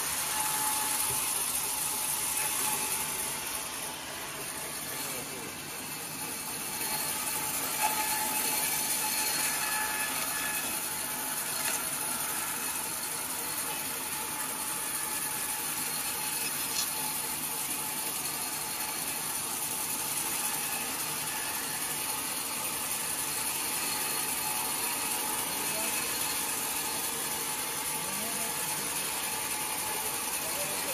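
Band sawmill running, its blade cutting lengthwise through a large log with a steady noise.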